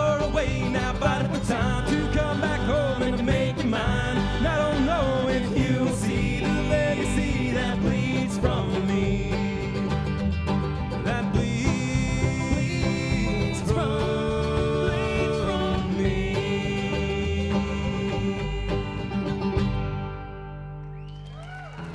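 A live acoustic string band playing in a country-bluegrass style: upright bass, banjo and acoustic guitar, with no words heard.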